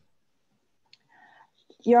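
Near silence on a video-call line, broken by a faint click about a second in and a brief soft noise, before a voice starts speaking near the end.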